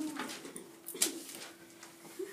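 A person dropping down to lie flat on a hard classroom floor, with one sharp thump about a second in, over a steady hum.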